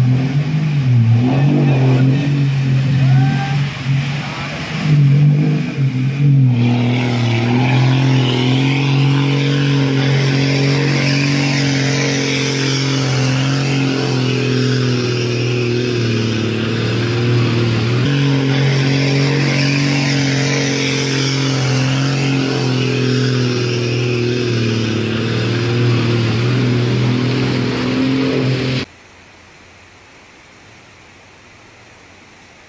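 Heavy truck engines running and revving as trucks wade through floodwater, with the rush of water over them. From about six seconds in, one engine holds a steady note under load; the sound cuts off suddenly near the end.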